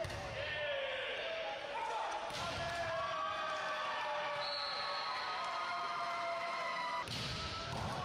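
Volleyball being struck during a rally in a large echoing hall: sharp hits at the start, about two and a half seconds in and about seven seconds in, with voices carrying through the hall between them.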